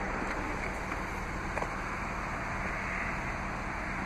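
Steady wind noise on the microphone, with a faint click about one and a half seconds in as the car's front door latch releases and the door swings open.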